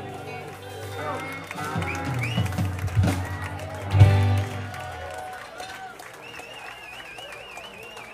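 A live rock band's song ending: a held chord fades out, two final low hits land about three and four seconds in, and the bar crowd cheers and whoops. A warbling high whistle starts near the end.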